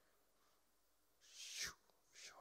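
Near silence, then a little over a second in, one brief breathy sound falling in pitch, made by a man at a handheld microphone.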